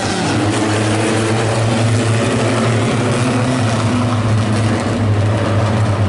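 Pony Stock race cars running at speed on a dirt oval, their engines blending into one loud, steady drone.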